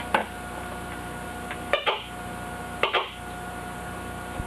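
A Syncrometer's loudspeaker giving three short pops, about a second apart, as the probe touches the test plate, over a faint steady hum. The pops mean current is flowing through the circuit, so the unit is working.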